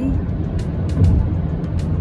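Steady low road and engine rumble inside a car's cabin at highway speed, with a brief louder bump about a second in. Background music with a light ticking beat plays over it.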